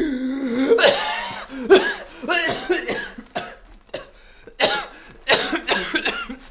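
A person's voice making wordless sounds that waver in pitch, then coughing in short bursts near the end.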